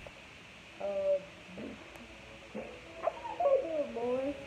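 A child's wordless vocal sounds, short hummed or sung-out notes that waver in pitch, with a longer run near the end.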